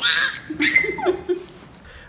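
A baby's loud, high, happy shriek, followed by a few shorter pitched cries and babbles over the next second.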